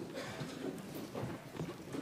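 Crowded hearing-room murmur with a rapid, irregular scatter of clicks from press photographers' camera shutters.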